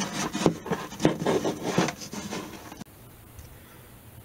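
Hands working a paper-towel-and-tape-wrapped pickup against a wooden archtop guitar body: irregular rubbing and rustling with light knocks. It cuts off abruptly about three seconds in, leaving quiet room tone.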